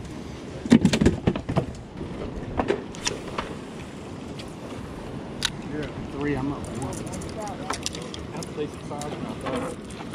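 A cluster of loud knocks and clicks about a second in, then a few scattered clicks, over steady outdoor background noise with faint voices.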